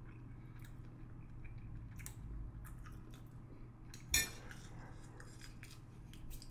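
Eating utensil clicking and scraping in a bowl of food: scattered soft clicks, with one louder knock about four seconds in.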